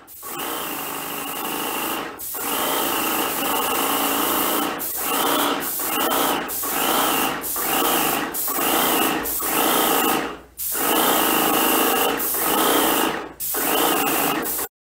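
Airless paint sprayer's pump motor running in short runs, cutting out and starting again about ten times. Each start rises briefly in pitch.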